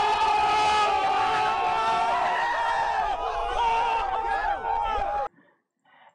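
A crowd of young people screaming and yelling together, many voices at once with one held shout standing out. It cuts off suddenly about five seconds in.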